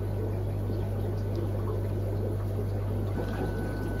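Aquarium filtration running: a steady low hum with water trickling from the tank filters.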